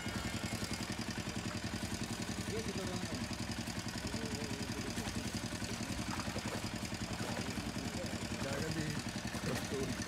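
A small engine running steadily with an even, rapid pulse, with no change in speed.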